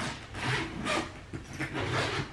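Rubbing and scraping from a black suitcase being handled and packed, in a few short noisy strokes.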